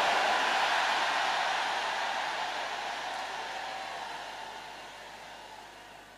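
A large congregation's roar of response, shouts and cheers from thousands of people, loud at the start and fading steadily away over several seconds.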